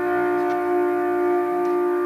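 A single held note on an amplified instrument, steady in pitch and level, with a few fainter lower tones beneath it: the sustained opening note of a live rock band's song.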